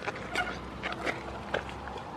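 Goat kid eating a cucumber: a run of short, crisp crunching and nibbling clicks, a few to a second.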